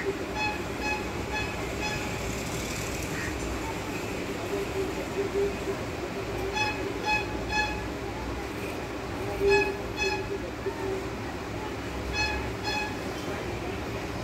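Short, high-pitched beeps or toots in runs of two to four, about two a second, repeating several times over a steady background hum.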